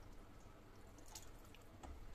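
Near silence, with a couple of faint light clicks from a spatula against the pan as a thick curry is stirred.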